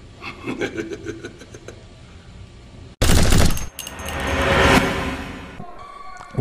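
Editing transition sound effect: a sudden, loud burst of rapid gunfire-like cracks about three seconds in, then a noisy whoosh that swells and fades away.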